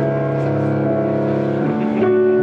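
Electronic keyboard playing long, steady held chords, the chord changing near the end.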